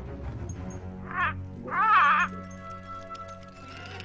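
Film-score music with soft sustained notes. Two short, wavering vocal cries from a cartoon character rise over it about one and two seconds in; the second is longer and louder.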